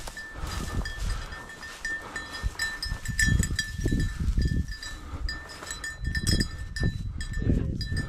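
A small bell on a bird dog's collar jingling on and off as the dog works the cover, over the rustle and thuds of someone walking through tall dry grass.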